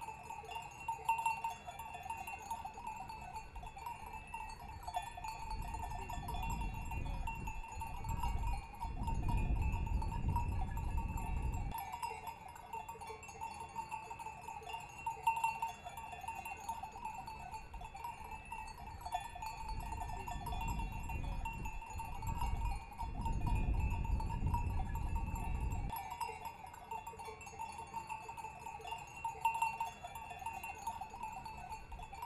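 Many small livestock bells clanking continuously, as from a herd of goats or sheep on the move. A low rumbling noise swells up twice for several seconds each, from about six to twelve seconds in and again from about twenty to twenty-six seconds in.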